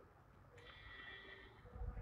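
Near silence: room tone, with a faint steady high-pitched hum from about half a second in and a soft low thump near the end.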